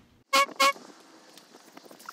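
Two short horn toots in quick succession, both at the same steady pitch, followed by a faint hiss.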